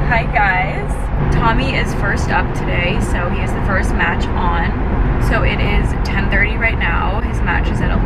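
Steady road and engine noise inside a moving car's cabin, with a woman talking over it.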